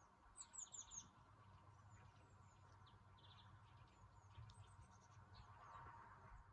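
Faint chirps of small wild birds: a quick run of four falling notes about half a second in, a short trill a little after three seconds, and scattered single calls, over a faint low background rumble.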